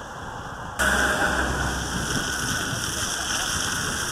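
Steady outdoor hiss with no clear tones, changing abruptly to a louder hiss about a second in.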